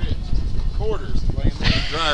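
Short bursts of indistinct talk from a man's voice over a steady low rumble of wind on the microphone.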